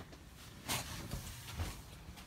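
Quiet small room with the soft rustle of a person moving about: one brief noise a little under a second in and a fainter one later.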